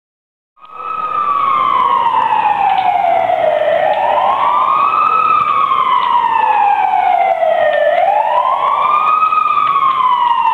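Emergency vehicle siren wailing, its pitch sweeping up quickly and falling slowly in cycles of about four seconds. It starts abruptly about half a second in.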